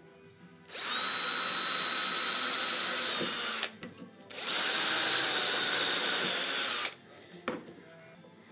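Power drill boring into plywood in two runs, about 3 s and then 2.5 s, with a short pause between. Each run has a steady high whine and cuts off suddenly, and a single click follows near the end.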